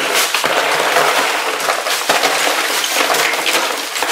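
A 10-pound bag of ice cubes poured into an empty plastic ice chest: a steady, dense clatter of cubes rattling against the hard plastic floor and walls and against each other.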